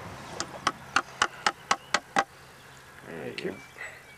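Sharp tapping, about eight quick strikes at roughly four a second that then stop, as marble eyes are tapped into the head of a chainsaw-carved wooden eagle.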